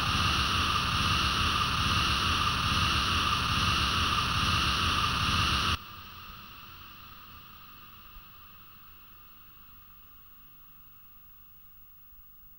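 Noise outro of an industrial metal track: a steady, hissing wall of noise that cuts off suddenly about six seconds in, leaving a faint hiss that fades away.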